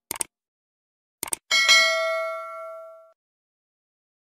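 Subscribe-button sound effect: a quick double mouse click, another double click about a second later, then a bright notification-bell ding that rings out for about a second and a half.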